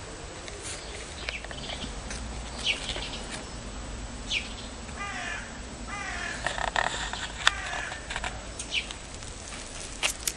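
Birds calling outdoors: several short, high, falling chirps, and in the middle a longer run of lower, wavering calls lasting a couple of seconds. A single sharp click comes about seven and a half seconds in.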